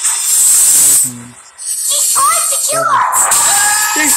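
Horror film trailer soundtrack: a loud hissing whoosh for about a second, a brief dip, then a voice and high-pitched screaming over music.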